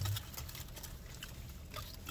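A person chewing a mouthful of sandwich: faint, soft, wet mouth clicks over a low background hum.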